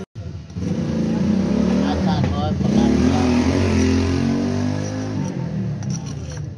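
A motor vehicle's engine passing close by, setting in about half a second in, loudest around three seconds and fading after five, with a person talking over it.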